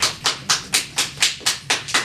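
Hand clapping: distinct, evenly spaced claps at about four a second.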